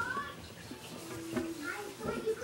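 Background speech in a high, child-like voice, heard at the start and again near the end, with a short hum and a single click in between.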